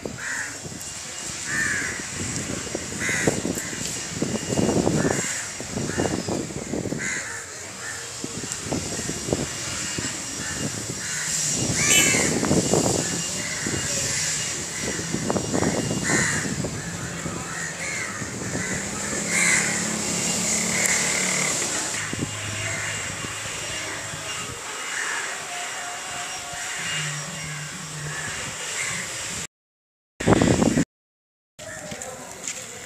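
Crows cawing again and again, short harsh calls coming in quick runs throughout.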